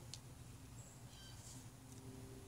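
Near silence: faint outdoor background with a few faint, short high chirps from distant birds.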